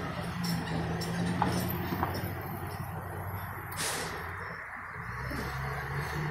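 A nearby vehicle engine idling, a steady low hum that drops slightly in pitch about five seconds in, over faint street noise.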